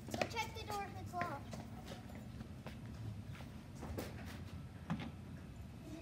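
Children's voices, short high calls in the first second or so, then scattered footsteps and knocks on wet pavement over a steady low rumble.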